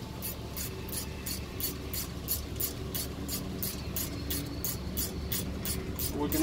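Ratchet wrench clicking steadily, about three sharp clicks a second, as a caliper bracket bolt is run down snug.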